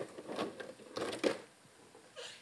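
Plastic RC crawler body being handled and lifted off its chassis: a few short rattles and clicks in the first second and a half.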